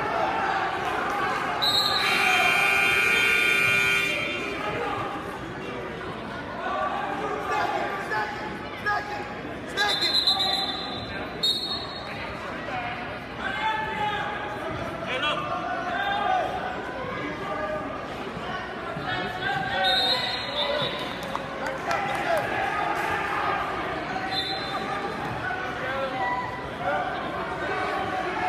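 Gym scoreboard buzzer sounding one steady two-second tone about two seconds in, over the chatter and calls of a crowd in a large echoing hall. A few short high tones sound later.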